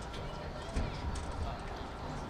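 Indistinct distant voices talking over steady outdoor background noise, with a brief low bump a little under a second in.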